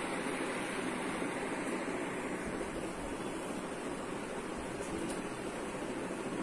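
Eraser rubbing across a whiteboard as the marker writing is wiped off, a steady rubbing hiss.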